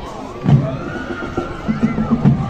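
Spectators whooping and shouting in long rising-and-falling cries, with a loud drum thump about half a second in and another shortly after.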